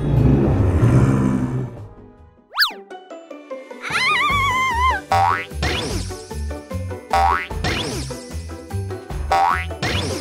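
Children's cartoon music with a steady bouncy beat, overlaid by cartoon sound effects. A quick falling swoop comes about two and a half seconds in, a wobbling boing about four seconds in, and short rising sweeps follow three more times.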